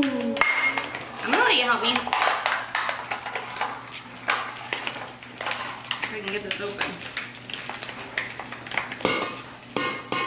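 Metal measuring cups and spoons clinking and knocking against each other and against a stainless steel mixing bowl, in a run of light, irregular taps.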